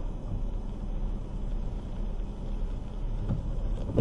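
Steady low rumble of car cabin noise, heard from inside a car with its engine running.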